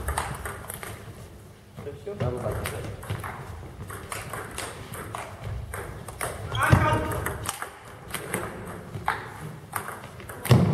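Table tennis balls clicking off bats and tables, quick irregular strokes from several rallies going on at once in a large sports hall.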